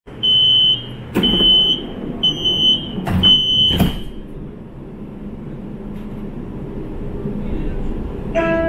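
Door-closing warning beeps on a CSR Zhuzhou light-rail train: four high beeps about a second apart, with the doors knocking as they slide and thud shut near the fourth beep. After that, a low, steady hum from the standing train.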